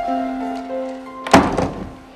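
Soundtrack music of held notes, then about one and a half seconds in a single loud thunk from a wooden door, the loudest sound, with a short ring after it.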